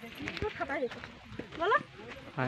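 People's voices in short bits of talk and calling out, one rising call near the end, with a few brief knocks.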